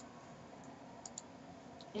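A few faint, sharp computer mouse clicks over a steady low electrical hum.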